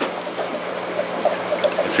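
Steady bubbling and trickling of water from air-driven aquarium filters, with a faint low hum underneath.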